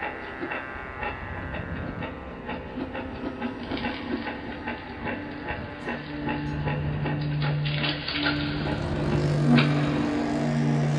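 A rhythmic mechanical clatter of quick, regular clicks. About six seconds in, a steady low hum joins it, breaking off briefly a couple of times, with a sharper knock near the end.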